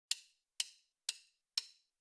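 A one-bar count-in: four short, evenly spaced clicks about half a second apart, like a metronome or wood-block click, setting the tempo.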